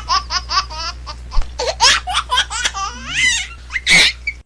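A person laughing in rapid, repeated bursts, with a louder burst near the end.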